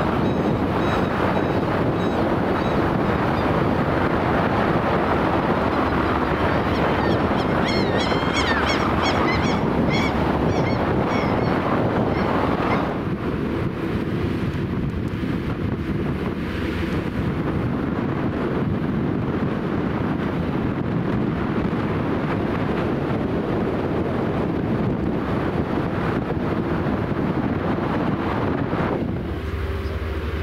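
Wind rushing over the microphone on a moving ferry's open deck, a steady noise that eases a little about halfway through. Between about eight and twelve seconds in, a few high chirping bird calls come through over it.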